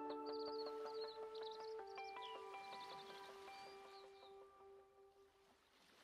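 Quiet, slow instrumental background music of held notes, with bird chirps mixed in, fading out near the end.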